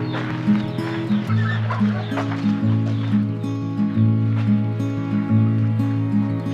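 Slow background music with long held low notes, with chickens clucking now and then over it.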